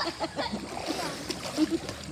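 Swimming pool water splashing as several children duck underwater and come back up, with children's voices over it.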